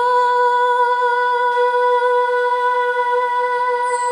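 A woman singing one long, steady held note into a microphone, rising slightly onto the pitch at the start.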